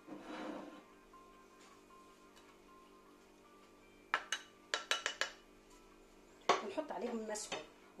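Ceramic spice dish knocked and scraped with a wooden spoon over an enamelled cast-iron cocotte as spices go into the pot: a quick cluster of sharp clinks and taps about four to five seconds in.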